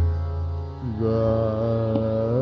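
Hindustani classical vocal in raag Basant Mukhari: a drum stroke with a low boom at the start over a steady drone, then a male voice entering about a second in with a long held note that bends gently in pitch.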